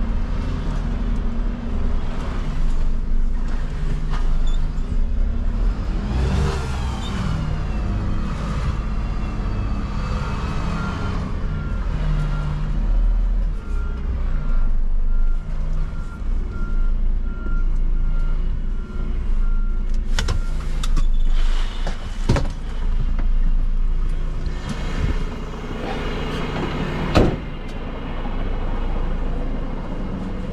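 Renault refuse truck's diesel engine running as it manoeuvres at low speed, heard from the cab. A steady run of short high beeps sounds through the middle, and a few sharp knocks come in the second half, the loudest near the end.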